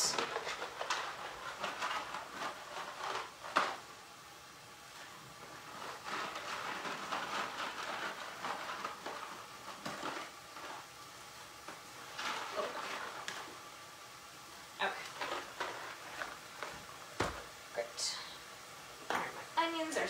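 Kitchen handling sounds: a bag of dry cassava fusilli rustling and the pasta being poured out into the pot, with several sharp knocks and clinks of pans and utensils, the loudest about three and a half seconds in.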